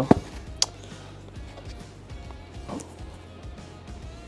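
A seam ripper picking and cutting embroidery stitches out of a cap: one sharp click about half a second in, then a few faint ticks, over faint background music.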